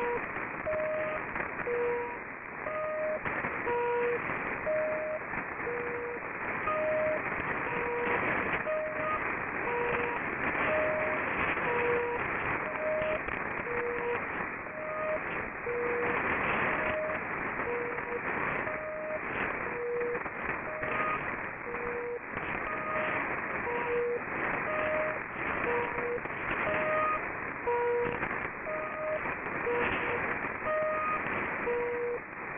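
HAARP shortwave transmission heard through AM receivers tuned to 2800 and 3300 kHz: short pulsed tones, a lower and a slightly higher one alternating about once a second, each frequency carrying its own tone, over steady radio static hiss and crackle.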